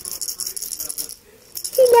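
Small plastic ball rattle being shaken: rapid, even, high-pitched rattling that stops about a second in.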